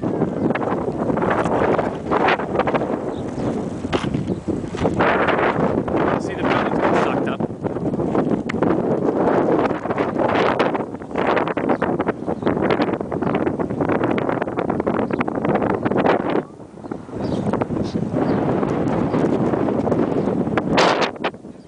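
Wind from an approaching dust storm buffeting the microphone in irregular gusts, with a short lull about three quarters of the way through.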